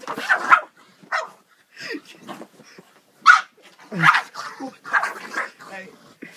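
Pug barking and snapping in a string of short, sudden outbursts, guarding a marker held in its mouth as someone tries to take it away.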